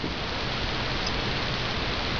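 Steady, even hiss with no distinct clicks or knocks: background noise of the recording, such as microphone or camera hiss or room air noise.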